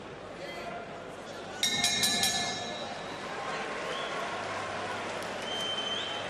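Boxing ring bell struck rapidly several times about a second and a half in, marking the end of the round, over steady arena crowd noise.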